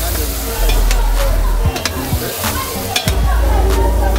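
Chicken and vegetables frying in a pan on a gas burner, sizzling steadily while being stirred, with several sharp knocks and scrapes of a wooden spoon against the pan.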